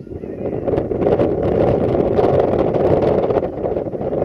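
Wind buffeting the camera microphone, a loud rushing rumble with crackles that builds over the first second and then holds.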